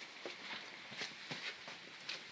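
A few faint, light knocks spread over two seconds, with a quiet room background.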